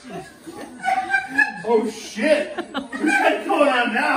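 People chuckling and laughing, mixed with bits of talk.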